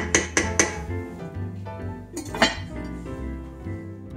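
Wooden spoon knocking against the sides of an enamelled cast-iron pot while stirring stew: several quick knocks in the first second, then one more sharp knock about two and a half seconds in, over background music.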